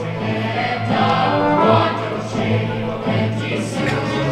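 Live choir singing held notes over orchestral accompaniment with a steady, pulsing bass line, part of a stage musical's score.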